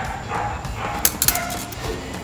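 Steel practice rapier blades clicking against each other in a quick cluster of three sharp contacts about a second in, during a parry and disengage. Faint short calls sound in the background.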